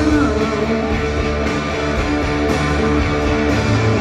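A live rock band playing an instrumental passage with no vocals: electric guitars, bass guitar and drums, with cymbal accents about once a second.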